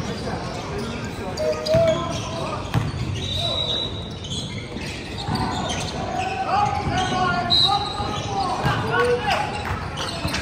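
Basketball bouncing on a hardwood gym floor, with short high sneaker squeaks and players' voices calling out in the second half, all echoing in a large gym hall.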